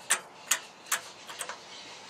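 A sharp mechanical tick repeating evenly, a little over two a second.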